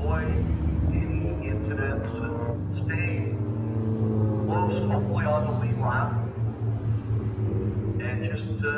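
Several small stock cars running around a short oval track, a steady low engine drone with one engine's pitch sliding as it passes. An announcer's voice is heard indistinctly over the engines in two stretches.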